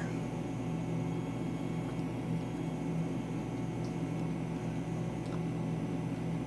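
Steady low mechanical hum, with a few faint snips as small scissors cut into a leathery ball python eggshell.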